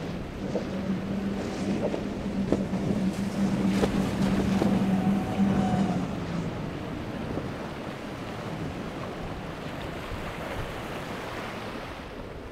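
Outboard engines of a Nor-Tech 450 Sport center-console boat running at speed through rough inlet water, with splashing spray. The steady engine hum grows louder up to about six seconds in as the boat passes, then fades away. Wind buffets the microphone throughout.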